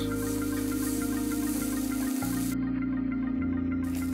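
Background music: soft, steady held tones, the bass notes changing about two seconds in and again a little past three seconds.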